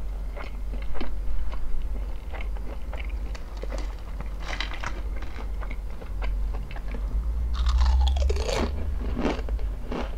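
Close-miked chewing of crunchy potato chips: irregular crisp crunches throughout, with a louder, denser spell of crunching about eight seconds in as a fresh chip is bitten.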